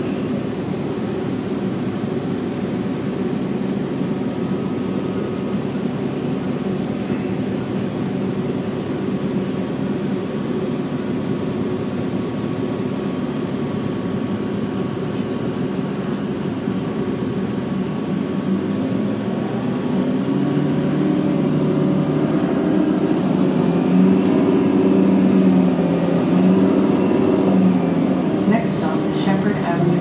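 Interior drone of a 2009 Orion VII NG hybrid city bus, its drivetrain running steadily while the bus stands, then growing louder and shifting in pitch as it pulls away about 20 seconds in.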